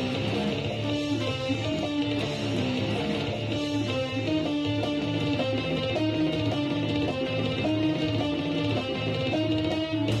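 Electric guitar played clean, with no effects, picking a melodic line of held single notes that step up and down in pitch, each note ringing for about half a second to a second.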